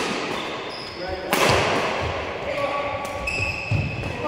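Badminton play in an indoor hall: two sharp racket-on-shuttlecock hits about two seconds apart, each ringing on in the hall's echo, with short squeak-like tones between them.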